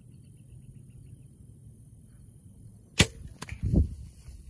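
A compound bow shot: a sharp, loud snap of the string as the arrow is released, about three seconds in. A fainter click follows a moment later as the arrow strikes the doe, then a short low thud.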